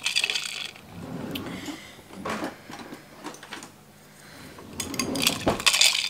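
A glass mason jar being handled, with scattered light clinks and taps on the glass. There is a short hiss just after the start and again near the end.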